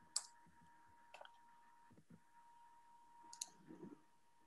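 Near silence with a faint steady tone and a few scattered faint clicks.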